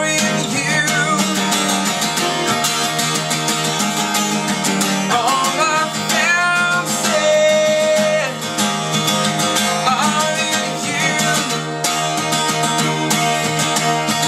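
Steel-string acoustic guitar strummed in a steady rhythm, with a man singing over it in stretches.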